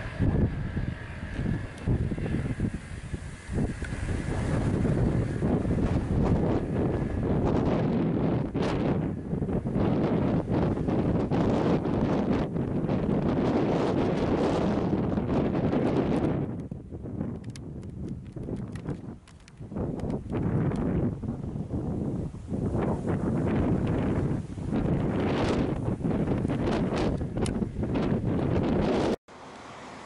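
Wind buffeting the camera microphone on an exposed hilltop: loud, rumbling gusts that come and go, easing briefly twice a little past the middle, then cutting off suddenly near the end.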